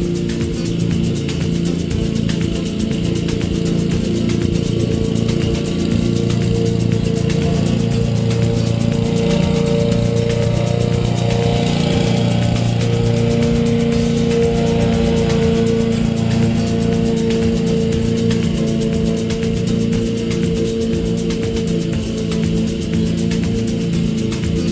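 Background music over a Honda self-propelled lawn mower's engine running steadily under load. The mower gets louder about halfway through as it passes close by, then fades as it moves away.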